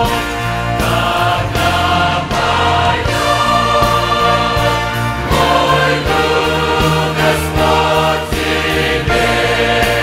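Large mixed choir singing a Christian worship song in Russian, full and continuous.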